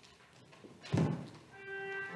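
A single dull thump about a second in, then a church organ begins a held chord near the end, entering softly.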